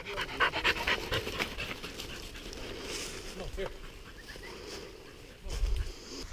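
A hunting dog panting rapidly, loudest in the first second and a half, then softer. A brief low rumble comes near the end.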